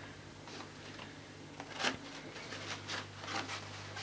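Zip on the cloth outer bag of a vintage Hoover Junior upright vacuum being pulled open, faint scratchy ticks with one sharper click a little before halfway, over a low steady hum.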